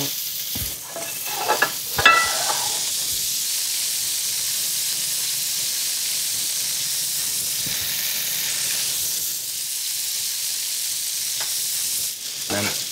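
Bacon rashers and bread frying in pans on a gas hob: a steady hiss of sizzling fat. A few short knocks and clinks in the first couple of seconds, the loudest about two seconds in.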